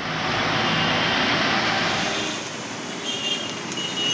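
Road traffic noise from a vehicle passing close by: a broad rushing sound that swells to its loudest about a second in, then eases off.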